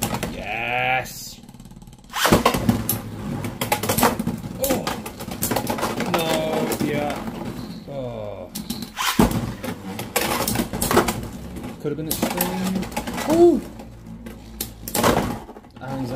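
Beyblade X spinning tops clashing in a plastic stadium: a dense, rapid rattle of metal-and-plastic collisions and grinding against the rail, which starts suddenly about two seconds in and runs on with a brief break about nine seconds in.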